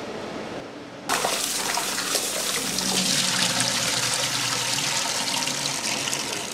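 Water running hard from a tap into a large stainless steel stockpot of peeled potatoes, starting suddenly about a second in and running on steadily.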